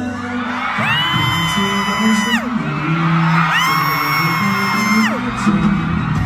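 Live concert music playing loud over the PA, with a nearby fan letting out two long, high-pitched screams, each swooping up, held for about a second and a half, then dropping away.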